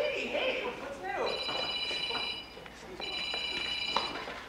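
Telephone ringing twice, each ring a steady high-pitched tone lasting about a second, with a short pause between them.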